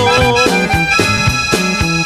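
Norteño band playing an accordion melody of held notes between sung lines, over a steady bass line.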